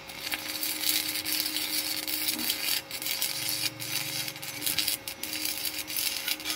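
Stick (MMA) welding arc crackling and spitting steadily as an electrode burns along a steel bar, fed by a small inverter welding machine, with a faint steady hum underneath. The rod is damp and had shed some of its flux coating; it has now burned past that stretch and runs smoothly.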